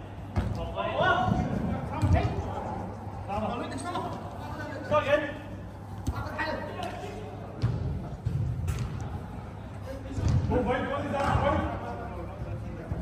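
Football players shouting to each other across an indoor five-a-side pitch, echoing in a large hall. The ball is kicked with a few sharp thuds, one about two seconds in and another near the eight-second mark.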